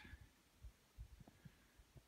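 Near silence with a few faint, short low thuds at irregular intervals.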